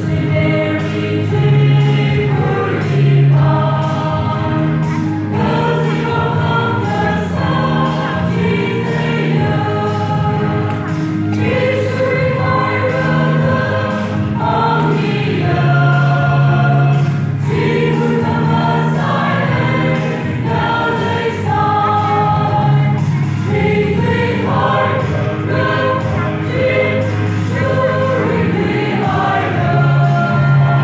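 Church choir of mostly young women singing a hymn.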